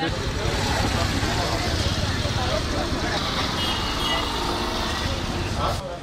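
A steady low rumble with an even background hiss, under faint voices of people talking nearby; it cuts off suddenly near the end.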